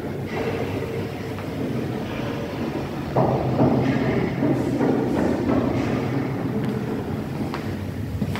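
Steady low mechanical rumble of passing vehicle traffic, growing rougher and louder about three seconds in.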